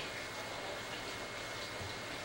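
Steady background hiss with a faint, even high whine running under it, and no distinct events.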